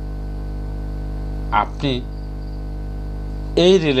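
Steady electrical mains hum, a low buzz that runs under the recording. A short voice sound breaks in about one and a half seconds in, and speech resumes near the end.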